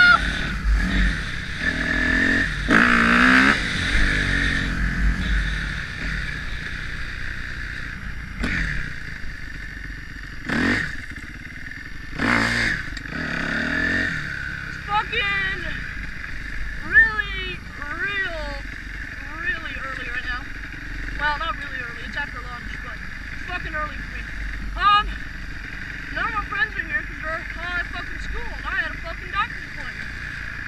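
Kawasaki KX250F single-cylinder four-stroke dirt bike engine running and revving while ridden. There is a loud rev a couple of seconds in, then repeated rises and falls in pitch as the throttle opens and closes.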